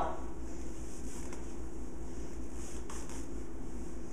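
Steady low hum of room background noise, with two faint, soft rustles about a second and three seconds in as a compression sock is worked onto a foot.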